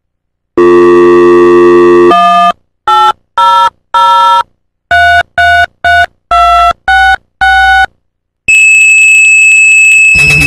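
Telephone line sounds: a dial tone, then about ten touch-tone (DTMF) digits dialed as short two-tone beeps, then a dial-up modem's handshake begins near the end as a steady high tone over hiss.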